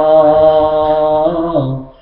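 A man singing a Hindi devotional bhajan, holding one long, steady note that fades out shortly before the end.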